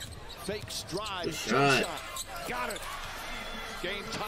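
Basketball game broadcast audio: a ball being dribbled on the hardwood court under a TV commentator's voice.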